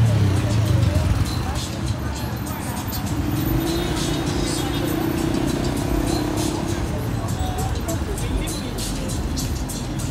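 Busy roadside street ambience: a pickup truck's engine running close by in the first second or so, over steady traffic, people's voices and music.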